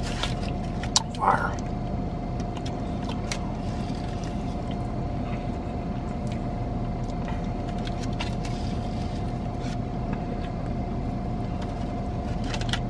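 Steady hum of a car idling, heard from inside its cabin, with a thin constant whine over a low rumble. A few small clicks are heard, and there is a short murmur about a second in.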